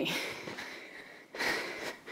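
A woman breathing hard during a cardio exercise: two breaths, one fading over the first second and another starting about one and a half seconds in.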